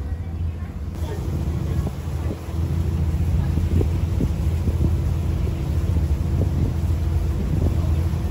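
Passenger ferry's engine running with a steady low drone, a steady higher hum joining about a second in, and wind buffeting the microphone.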